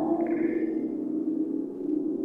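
Ambient soundtrack drone: a sustained low pitched tone with a brief high ping shortly after the start.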